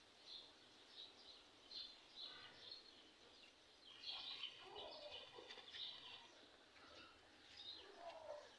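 Faint bird chirps: short, high calls repeating every half second or so, busiest about four seconds in.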